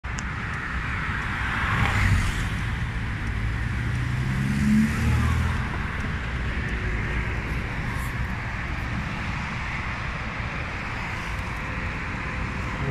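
Steady rush of wind and road noise from a moving electric motorcycle, with a louder swell about two seconds in and another about five seconds in, the second carrying a low hum that rises slightly in pitch.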